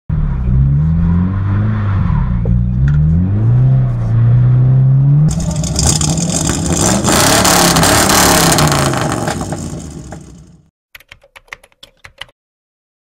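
Subaru BRZ's flat-four engine through an Invidia N1 cat-back exhaust, revving up and down several times. About five seconds in, a loud rushing noise takes over and fades out. Near the end comes a quick run of typing-like clicks.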